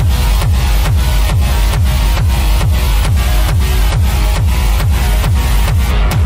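Acid techno: a driving four-on-the-floor kick drum at a little over two beats a second under bass and synth layers.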